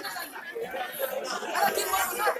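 People talking among themselves.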